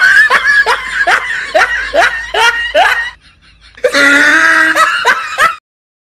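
Laughter: a quick run of about eight short laughs, each falling in pitch, then after a brief pause a longer held laugh that cuts off suddenly near the end.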